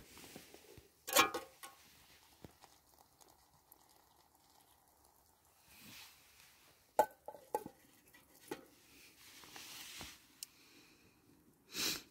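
Camping cook pot and its metal lid being handled: a loud knock about a second in, then a few short metallic clinks and taps, one with a brief ring, and another knock near the end, with quiet in between.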